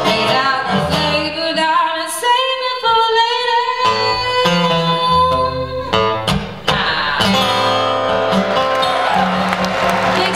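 Woman singing with her own acoustic guitar accompaniment, holding some notes long, in the closing bars of a slow blues song.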